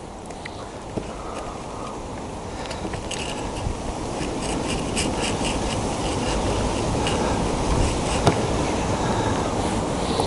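Wind buffeting the microphone: a low, rumbling noise that slowly grows louder, with scattered light ticks and clicks over it from a few seconds in.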